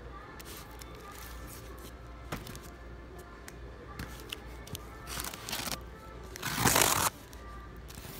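Cardboard shipping cases being handled, with short rasping scrapes and a louder one lasting about half a second near the end, over quiet background music.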